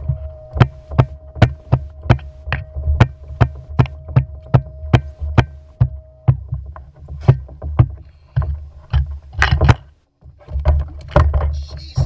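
Fishing reel being cranked against a fish on a bent rod, clicking in a steady rhythm of about two or three clicks a second, with a steady hum that stops about halfway through. After that the clicks turn irregular, with scattered knocks, all over a low rumble of wind or water on the microphone.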